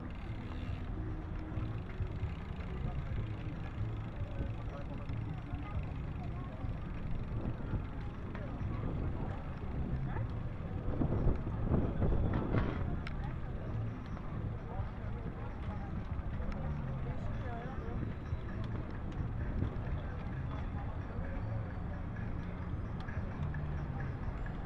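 Ride-along sound of a bicycle rolling in a dense crowd of cyclists: steady wind and rolling noise on the bike-mounted microphone, with indistinct voices of nearby riders. It grows louder for a few seconds around the middle.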